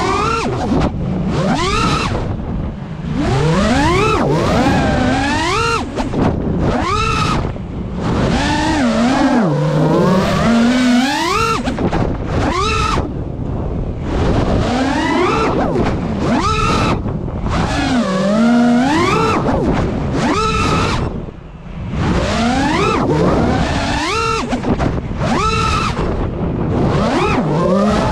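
FPV quadcopter's motors and propellers whining, the pitch sweeping up and falling back again and again as the throttle is punched and eased through fast turns, over a steady rush of noise.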